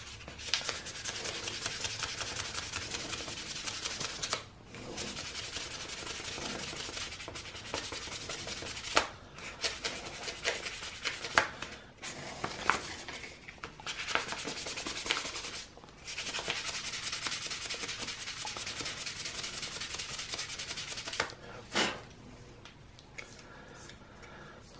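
Hand-sanding a drone propeller blade, quick back-and-forth abrasive strokes in several bouts broken by short pauses, tailing off near the end. Material is being taken off the heavy blade to balance the three-blade prop.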